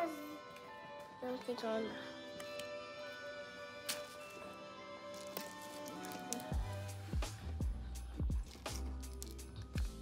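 Background music of sustained chords. About six and a half seconds in, a deep bass and a steady beat of roughly two strokes a second come in.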